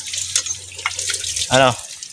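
Water splashing as plates are washed by hand, with a few light clicks.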